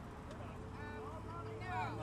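People talking among themselves, over a steady low hum of traffic at an intersection.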